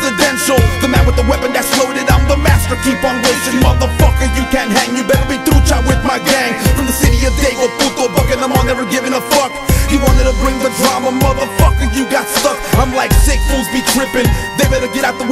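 Hip hop beat with heavy, repeated bass hits under sustained instrument lines, with a rapped vocal over it.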